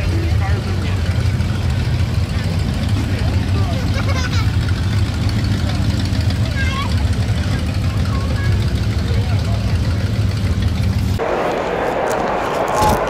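A muscle car's engine running with a low, steady rumble as the car rolls slowly past at low speed. The sound cuts off abruptly about eleven seconds in.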